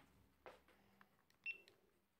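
Near silence: faint room tone with a few small clicks, and one short high beep about one and a half seconds in.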